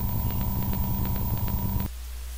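Dark ambient drone from a horror film's soundtrack: a steady low hum with a thin steady high tone and a faint, regular ticking. All of it cuts off abruptly just before the end, leaving only a faint low hum.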